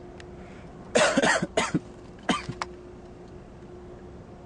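A person coughing several times, in short loud bursts between about one and two and a half seconds in.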